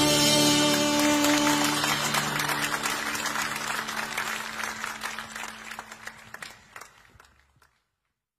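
The final chord of a hymn, played by a live band with singers, rings out and fades over the first couple of seconds. Audience applause follows, thinning out and fading away before the end.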